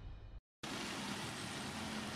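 The faint tail of a logo jingle fades and cuts off, and after a brief moment of dead silence a steady outdoor street ambience comes in, a low even hum of road traffic.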